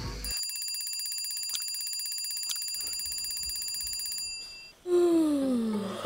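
A bell rings rapidly and steadily for about four seconds, then cuts off suddenly: a wake-up ring. Near the end a loud, long yawn falls in pitch as the sleeper stretches awake.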